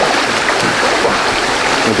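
Steady rush of running water, an even hiss with no breaks.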